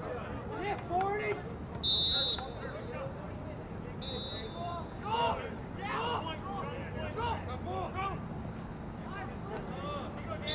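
Coach's whistle blown twice: a loud blast about two seconds in and a shorter one about four seconds in. These are the whistle signals that start and release each rep of the drill. Players and coaches call out to each other throughout.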